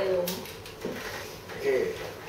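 Speech: a woman's voice finishing a short spoken phrase, then two brief pitched vocal sounds about a second in and near the end.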